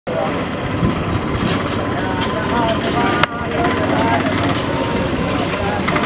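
Busy street bustle: many people talking at once over a vehicle engine running, with one sharp knock a little over three seconds in.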